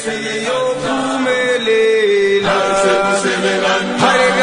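Voices singing a slow, chant-like song, with long held notes that step up and down in pitch.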